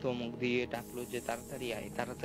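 A man speaking in Bengali, with a high, steady hiss that cuts in suddenly less than a second in and carries on beneath his voice.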